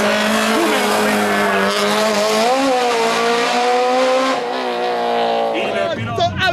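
Race car engine held at high revs, its pitch rising slightly midway, then falling away in the last second or so.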